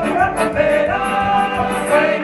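Live folk band music led by an accordion, with singing and a regular drum beat.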